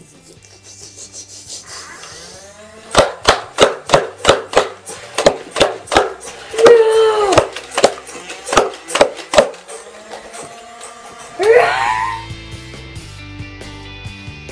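Nerf Stryfe blaster fired in a rapid string, about sixteen sharp snaps at two to three a second, starting about three seconds in, over background music. A swooping pitched sound comes in the middle of the string and another near the end.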